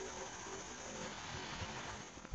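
Faint steady hiss with a low hum underneath: background noise, with no distinct event.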